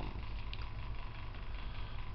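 Electric box fan running: a steady low hum with an even whoosh.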